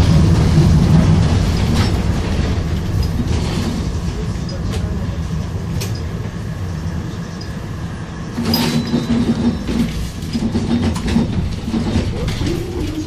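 A Vienna tram heard from inside the car while it runs along the street: a low rumble of wheels on rails under a steady motor hum, loudest in the first second or so, with a few sharp clicks from the track. From about eight and a half seconds a higher steady motor tone comes in.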